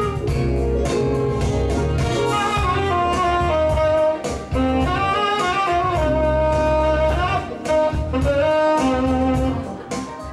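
Live smooth-jazz band: a saxophone plays the lead melody over keyboards and a steady beat.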